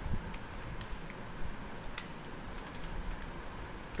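Computer keyboard typing: a few irregular, light keystrokes as a date is entered into a spreadsheet cell.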